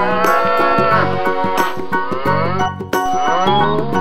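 Cow mooing, a few long moos one after another, over background music with a steady beat.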